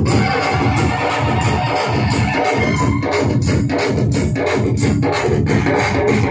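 Loud live music from an electronic keyboard played through a PA system, with sustained synthesizer notes over a repeating percussion beat.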